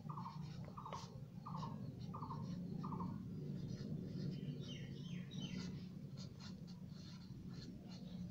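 A bird calls five times in an even series, short falling notes about two-thirds of a second apart. From about halfway through, a felt-tip marker scratches on paper as letters are written.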